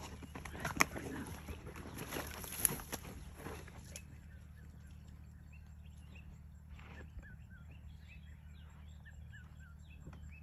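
Rustling and scuffing of grass and dirt with two sharp knocks over the first few seconds, as a white rhino cow moves beside her newborn calf. After that, small birds call with short, quickly repeated chirps.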